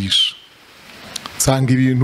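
A man speaking into a handheld microphone. He breaks off with a short hissing, whistle-like sibilant, pauses for about a second, then goes on talking.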